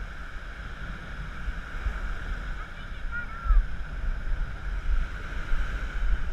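Wind buffeting the microphone over the steady wash of surf breaking on the beach, with a faint voice about three seconds in.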